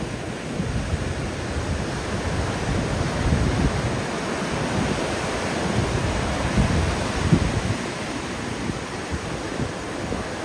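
Ocean surf: waves breaking and washing in, a steady rushing noise. Irregular low gusts of wind rumble on the microphone.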